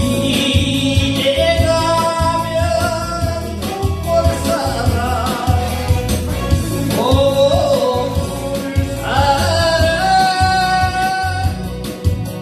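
A man singing a Korean trot song into a handheld microphone over a backing track with a steady beat, holding long notes.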